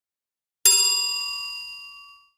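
A single notification-bell ding sound effect, struck about two-thirds of a second in and ringing as it fades away.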